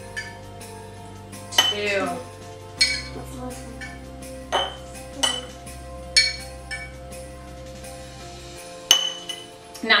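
Metal tablespoon clinking against a small glass jar several times as spoonfuls of water are tipped in, over soft, steady background music.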